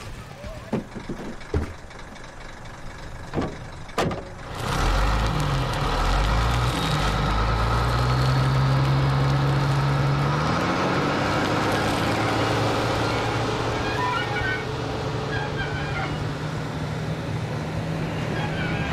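A few sharp knocks and clicks. Then, about four and a half seconds in, a heavy military truck's engine comes in with a loud, deep rumble, climbs in pitch around the tenth second as the truck pulls away across the sand, and then runs on steadily.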